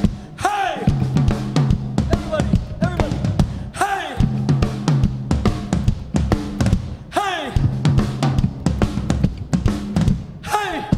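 Live rock band playing: a drum kit keeps a steady beat on bass drum and snare under an electric bass line, with a swooping melodic phrase that comes back about every three and a half seconds.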